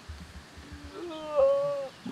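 A man's drawn-out, high-pitched vocal exclamation about a second in, the strain of doing push-ups against a pickup truck's hood.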